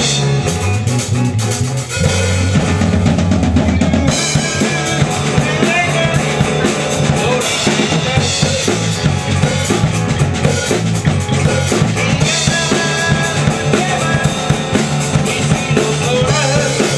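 A live rock band plays a song with drum kit, electric bass and acoustic guitar, the drums most prominent. The band gets fuller and louder about two seconds in.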